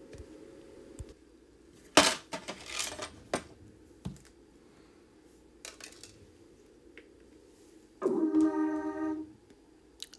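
Sharp clicks and knocks of hard plastic and hardware being handled, the loudest about two seconds in. Near the end a steady electronic tone is held for about a second.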